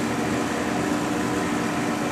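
Steady machine hum with a low droning tone over an even air hiss, from the spectrometer lab's running equipment and ventilation.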